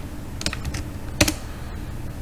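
Computer keyboard keystrokes: a few light clicks about half a second in, then one louder keypress just past the middle.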